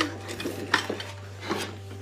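A few light clinks and knocks of dishes on a wooden table, the sharpest a little under a second in, over a low steady hum.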